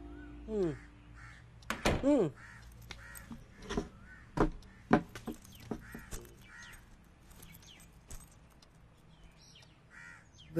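Crows cawing: two loud, falling caws in the first two seconds, then fainter calls, over scattered sharp clicks and knocks.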